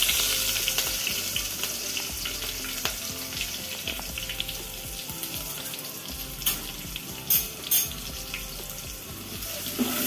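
Chopped onions sizzling in hot oil in a steel pot, the loud hiss slowly fading as the oil settles, with steady crackling and a few sharper pops in the second half.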